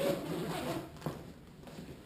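Zipper of a paintball gear bag's main compartment being pulled open, a rasping run through about the first second with a sharp click just after, then fainter rustling of the bag's fabric as the flap is lifted.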